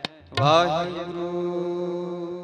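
A TV channel ident's audio: after a click and a brief drop-out, a long chanted note swoops up in pitch and then holds steady over a low drone, slowly fading.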